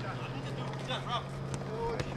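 Faint shouts from players on a football pitch, over a steady low hum.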